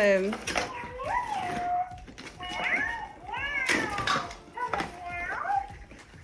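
FurReal Walkalots toy cat's electronic voice giving a string of short meow-like calls that rise and fall in pitch, some ending in a flat held tone.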